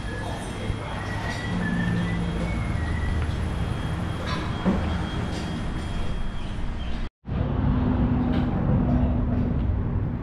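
Mitsubishi Triton pickup's diesel engine running steadily at low speed as the truck creeps onto a service bay, over workshop background noise. The sound cuts out abruptly for an instant about seven seconds in.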